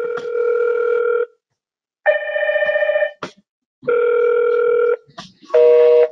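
Safire IP video intercom indoor monitor playing its electronic call ringtone, in bursts about a second long that alternate between two chords with short gaps between them. The ring comes from a test call sent from the IP main module to check the cascade connection.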